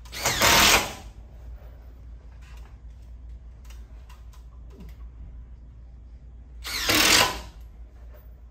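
Cordless driver running in two short bursts, one just after the start and one near the end, driving small hex-head timber screws through a steel joist hanger into a timber beam.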